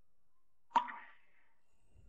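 A single sharp hit with a short ringing tail about three-quarters of a second in, set against near silence.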